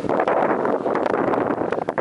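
Wind blowing across the camera's microphone: a loud, steady rushing noise with small crackles.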